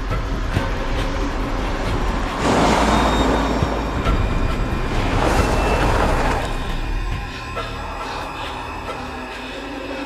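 A car driving at night, its low engine rumble running under a tense film score, with two loud swells of noise about three and six seconds in. The rumble dies down about seven seconds in as the car comes to a stop.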